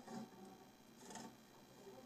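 Near silence: room tone, with two faint, brief snatches of a voice, near the start and about a second in.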